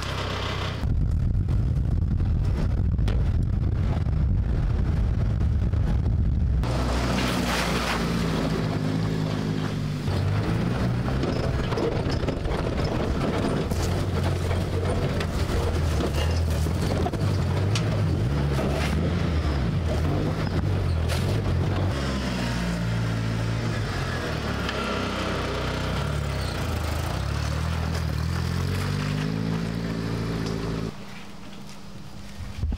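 Engine of a homemade off-road buggy built around a recycled car engine, driving over rough forest tracks, its pitch rising and falling as it revs up and eases off.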